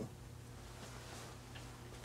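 Quiet room tone: a steady low hum under faint background noise, with one faint tick about one and a half seconds in.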